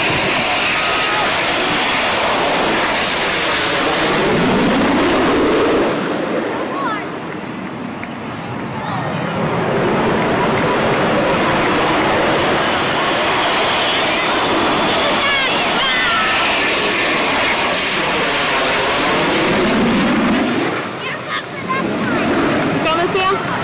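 Blue Angels F/A-18 Hornet jets passing low overhead on landing approach, one after another: a loud jet roar with a high whine that rises and falls as each goes by. The roar dips briefly about six seconds in, then swells again for the next jet.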